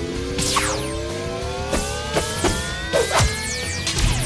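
Synthesized morph sound effects over background music: a stacked electronic tone climbs steadily in pitch throughout, cut by about half a dozen quick downward whooshes and hits as a toy wrist morpher powers up.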